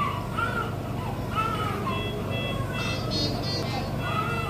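Neonatal ICU equipment sound: a steady hum with a thin high tone, and a run of short electronic beeps about two seconds in. Throughout, a repeating rising-and-falling tonal sound with overtones is the loudest thing.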